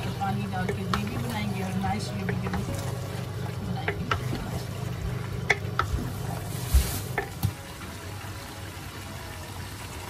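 Wooden spatula stirring chicken pieces in an enamelled cast-iron pot, with soft scraping and a few sharp knocks against the pan, over light sizzling.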